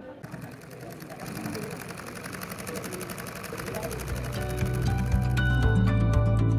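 Background music fading in over busy street ambience with distant voices; an even, fast ticking rhythm runs through it, and sustained musical notes take over about four seconds in.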